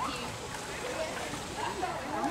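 River water rushing steadily over the riffles, with faint distant voices talking and calling.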